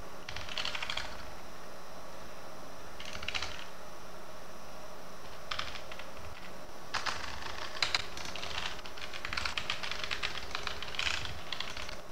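Computer keyboard typing in short bursts of quick key clicks with pauses between: a run about half a second in, another at about three seconds, a brief one near six seconds, then longer, denser runs from about seven seconds to near the end.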